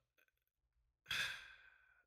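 A man sighing: one breathy exhale about a second in, fading out within about half a second.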